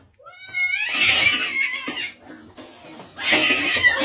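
A domestic cat's angry cries in two loud outbursts: the first begins with rising wails about half a second in and lasts over a second, and the second comes near the end as the cat goes for its own reflection.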